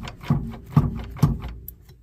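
A front ball joint clunking as the wheel and knuckle are shaken up and down by hand, about two knocks a second, stopping about a second and a half in. The castle nut on the ball joint has backed off, leaving the joint loose in the knuckle.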